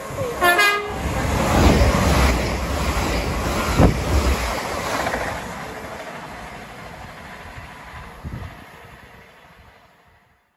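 Bi-mode express passenger train sounding its two-tone horn briefly about half a second in, then running through the station at speed without stopping; the loud rush of its passing peaks in the first few seconds and fades away as it recedes.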